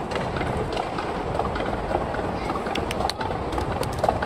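Skateboard rolling down a run of shallow concrete steps: a steady rolling rumble with scattered clacks as the wheels drop off the step edges, and running footsteps alongside.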